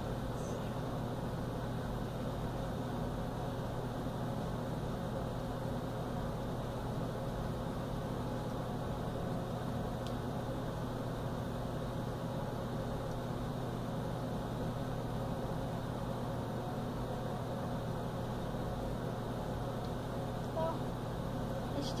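Steady low hum and airy whoosh of a running ceiling fan, unchanging throughout.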